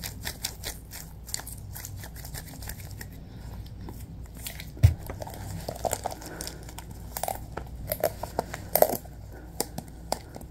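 Latex-gloved hands rubbing and kneading close to the microphone, a steady run of small rubbery crackles and squeaks. A single low thump comes about halfway through, then louder crinkling and crackling as the gloved hands handle a small clear plastic cup.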